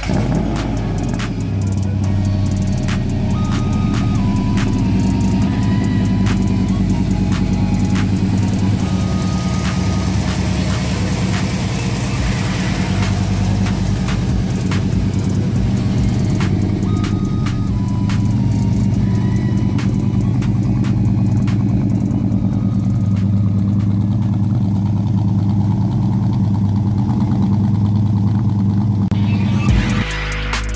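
LS2 V8 swapped into a 1972 Oldsmobile 442, running steadily at idle with a deep, even exhaust rumble.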